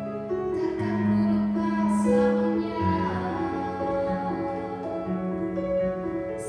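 A woman singing a slow song in long held notes, accompanied by an electronic keyboard.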